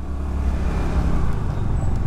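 Steady low rumble of a motorbike being ridden at low speed, engine and road noise together.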